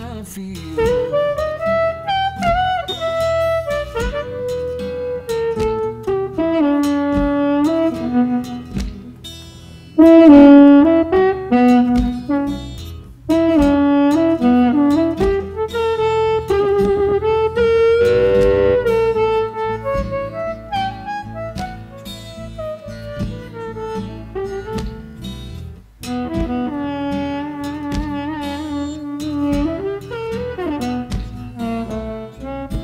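Playback of a recorded blues harmonica track in a band mix: the harmonica plays a lead line with bent, sliding notes over a steady beat, with its tone being reshaped by an equalizer as it plays. The playback gets suddenly louder about ten seconds in, and again about thirteen seconds in.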